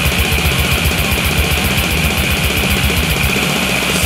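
Brutal death metal: heavily distorted guitars and bass over fast, relentless drumming, instrumental at this point.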